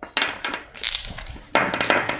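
Tarot cards being handled, drawn from the deck and laid down on a marble tabletop: three short, crisp papery rustles and slaps, the last just before the end.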